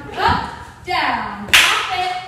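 A woman's voice vocalising along with the dance moves, with one sharp hand clap about one and a half seconds in.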